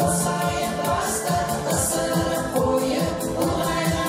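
A group of women singing together into microphones over an instrumental backing with a steady beat.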